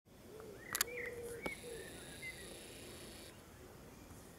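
A few short bird chirps, with two sharp clicks, one just before a second in and one about a second and a half in.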